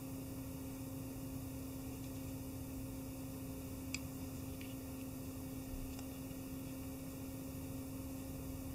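Steady low electrical hum, with one faint click about four seconds in.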